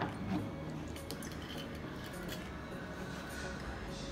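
A few faint, light clinks of bar glassware and a metal jigger being handled on a wooden counter, over a low steady background.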